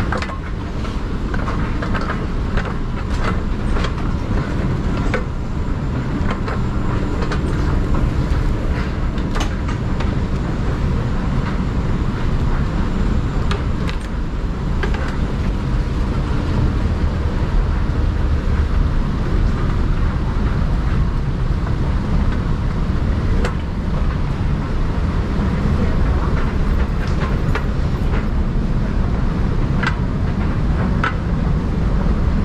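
Moving walkway running in a tiled underground passage: a steady low mechanical rumble, with faint scattered clicks over it.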